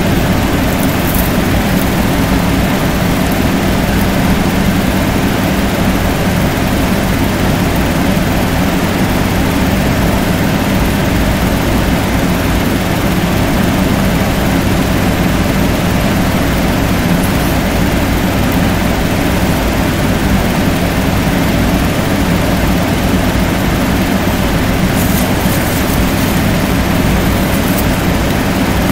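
A steady mechanical drone with a low hum, unchanging in level.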